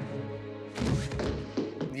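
Film soundtrack: a held, tense score with a heavy thud about a second in, a shot man's body hitting the floor.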